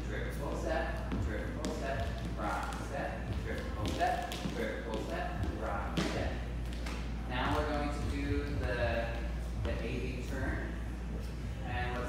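A person talking, over the taps and light thuds of two dancers' shoes stepping on a wooden floor as they work through swing steps. A steady low hum runs underneath.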